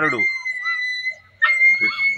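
A steady, high-pitched whistling tone, holding one pitch through a pause in a man's speech; his voice is heard briefly at the start and again near the end.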